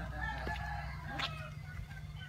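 Rooster crowing, its call rising and falling, over a steady low hum.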